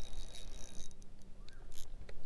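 Spinning reel being cranked by hand, a faint steady whir with a few light clicks, over a low rumble of wind on the microphone.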